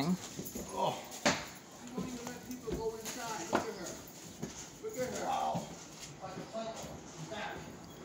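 A man's voice shouting from a distance in short, faint, indistinct bursts. A few sharp clicks and rubbing come from the phone being handled against clothing.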